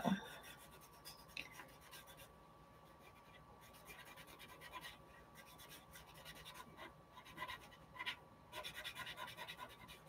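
Faint scratching of a cotton swab rubbed in short strokes over oil pastel on drawing paper, blending the pastel, with a quicker run of strokes near the end.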